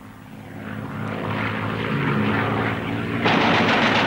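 Propeller aircraft's piston engines droning steadily, swelling up over the first two seconds, then suddenly louder and rougher about three seconds in.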